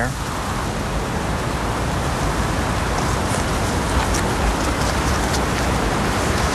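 Steady rushing hiss of outdoor ambience, like wind or road noise, holding an even level throughout.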